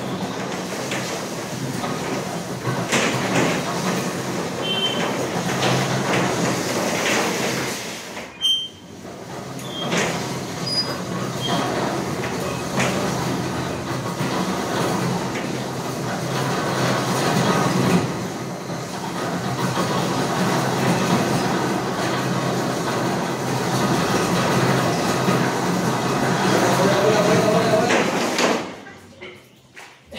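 Black borewell pipe being fed off a truck-mounted reel and lowered down the bore: a steady mechanical rumbling and scraping that breaks off briefly about eight seconds in and dies away near the end.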